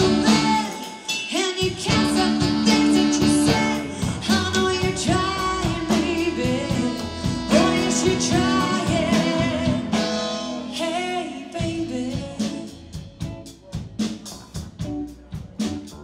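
A live blues and rock-and-roll band plays, with electric guitar, saxophone, upright bass and drums, and a woman singing without words over it. Near the end the band thins out to short, evenly spaced hits.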